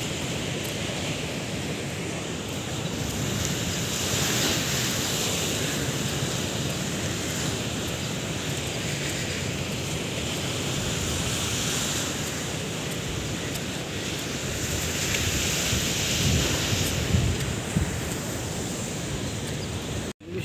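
Sea surf washing against the shore, swelling and fading every few seconds, with wind rumbling on the microphone.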